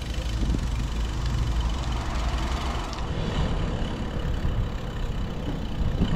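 Steady, fluctuating low rumble of wind and road noise on a bike-mounted camera's microphone while riding along a street, with car traffic close by.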